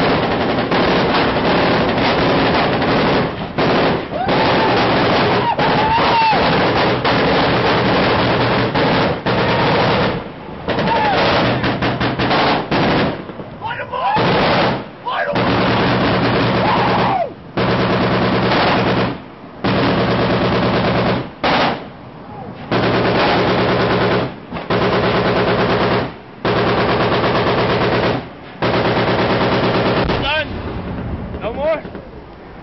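Loud automatic machine-gun fire in long bursts: almost unbroken for about the first ten seconds, then bursts of one to three seconds separated by brief pauses.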